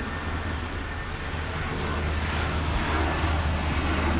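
A steady low rumble with a faint hiss behind it, slowly growing louder, with no speech.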